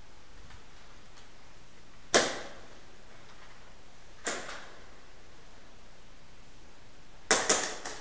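Airsoft gun shots: a single sharp crack about two seconds in, a softer one about two seconds later, then a quick burst of about four near the end.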